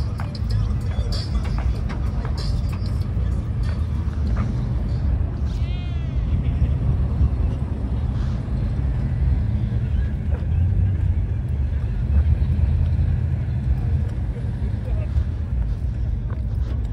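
Steady low rumble of car engines running, with people talking in the background. About six seconds in there is a brief run of high chirps.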